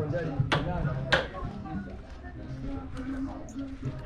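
Indistinct voices and music in the background, with no clear words.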